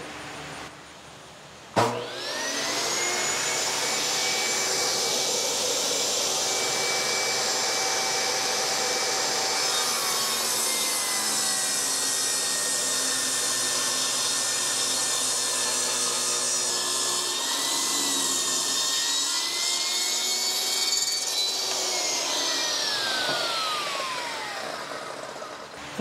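Portable table saw switched on about two seconds in, spinning up to speed and ripping a 2x4 lengthwise into 2x2 strips, its pitch sagging under the load of the cut. Near the end it is switched off and winds down.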